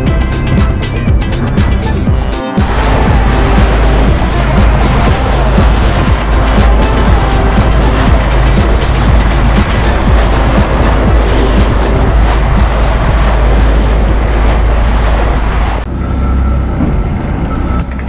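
Background music with a steady beat. From about two and a half seconds in, the loud rushing noise of a small fishing boat running at speed joins it, engine and water together, and it drops away shortly before the end.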